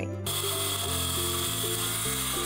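DeWalt 20V MAX cordless circular saw cutting across a sheet of T1-11 plywood siding. It starts suddenly about a quarter second in and runs steadily, a high whine over a hiss.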